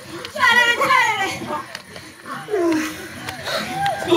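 Several voices cry out and moan without clear words, their pitch sliding up and down. The loudest is a high cry about half a second in; lower, drawn-out moans follow in the second half.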